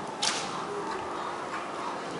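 A lunge whip cracks once, a single sharp, brief snap about a quarter of a second in, over the steady background of an indoor arena.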